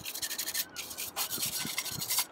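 Stiff brush scrubbing a bicycle chainring, its bristles rubbing over the teeth in quick, uneven strokes.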